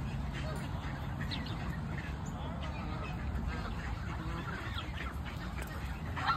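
A flock of Canada geese calling, with many short calls from different birds overlapping throughout.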